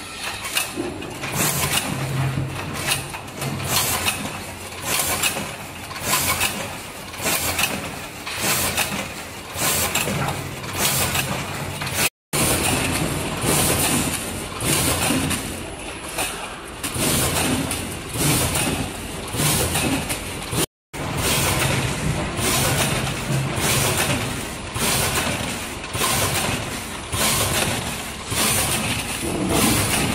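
Multihead weigher packing machine running on sliced cucumbers: a steady mechanical hum under a regular clatter a little more than once a second, as the machine repeats its weigh-and-bag cycle. The sound drops out twice for a moment.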